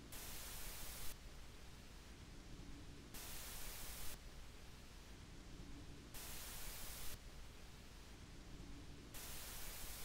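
Noise floor of a Deity Connect digital wireless microphone system: a faint, steady hiss, with the receiver output at +15 dB and the MixPre recorder gain at −15 dB. The hiss turns brighter for about a second every three seconds.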